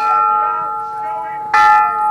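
A bell struck about one and a half seconds in, with a sharp attack and several clashing ringing tones that sustain, layered over the still-ringing tail of an earlier strike.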